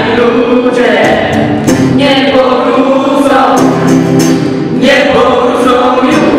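A mixed group of young voices singing a song in chorus, accompanied by strummed acoustic guitar.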